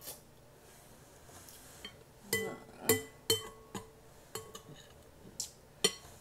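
Metal spoon clinking against a glass bowl while scooping greens: about eight sharp, ringing clinks starting about two seconds in.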